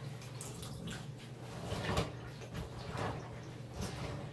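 Water sloshing and dripping in a bucket as a wet dyed silk dress is lifted and pushed back down into the dye bath, in soft, irregular splashes; the loudest comes about two seconds in.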